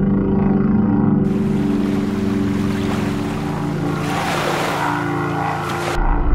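A steady low drone of held tones. About a second in, a rushing noise like water comes in over it, swells near the end and cuts off suddenly.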